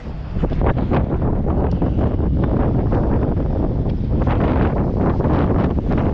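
Wind buffeting the microphone in a steady, heavy rumble, with faint crackle running through it.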